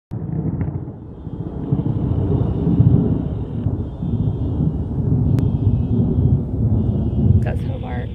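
Thunder rumbling on through a thunderstorm: a continuous low rumble that swells and fades, loudest about three seconds in.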